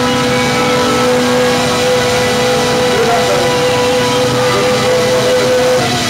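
Live punk band holding one long, steady note over a loud wash of distorted guitar and cymbals. The held note stops near the end as the band plays on.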